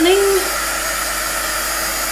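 Hand-held electric heat gun running steadily, a fan whir under a constant hiss of blown air, aimed at wet acrylic pour paint.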